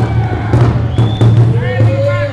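A hip-hop backing track starts over the PA with a heavy bass line and a beat, with a voice calling out over it in the second half.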